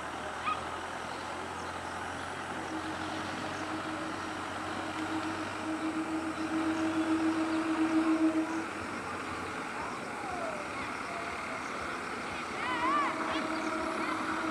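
Approaching EMU local train: a steady rumble, with a low steady tone that swells from about two and a half seconds in and cuts off suddenly a little past eight seconds; the tone comes back near the end.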